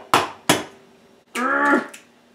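An egg knocked twice against the rim of a stainless steel mixing bowl, two sharp taps in quick succession, then a person's short, held vocal sound about a second and a half in.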